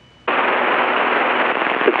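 Aviation VHF radio in the headset: a short quiet moment, then about a quarter second in the channel opens with a sudden, steady, loud crackling hiss of static as a transmission is keyed. A voice starts just at the end.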